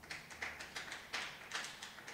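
Faint, irregular taps and rustles, a few a second, from handling at a lectern.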